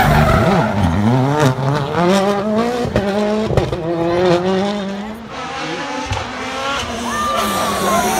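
Citroën C3 WRC rally car's 1.6-litre turbocharged four-cylinder engine accelerating hard out of a hairpin, its pitch climbing and dropping about once a second as it shifts up through the gears, with a few sharp cracks. It fades about five seconds in as the car pulls away, and another rally car's engine rises near the end as it approaches.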